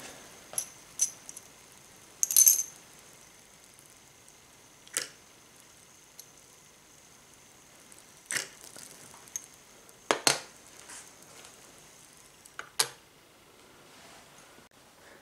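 Metal tweezers and copper wire clinking against a small glass beaker as copper pieces are set into hot sodium hydroxide solution over zinc granules. About seven short, sharp clicks come a second or a few seconds apart over a quiet background with a faint high whine.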